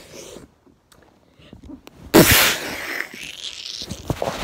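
Near quiet, then about two seconds in a sudden loud burst of breath-like noise with a falling vocal sound, trailing off over the next second and a half.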